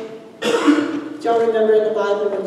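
A person clearing their throat once, a rough, raspy burst about half a second in, followed by held voiced sound.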